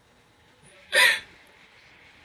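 A single short hiccup-like vocal sound about a second in, over a faint steady background.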